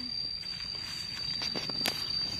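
Faint scuffs and light clicks of a boy's hands and feet on a tree trunk as he starts to climb it, with one sharper click near the end. A thin, steady high-pitched tone sounds throughout.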